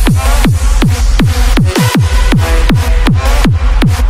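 Hardstyle dance music: a heavy kick drum on every beat, about three hits a second, each one dropping steeply in pitch, under a synth melody. No vocal.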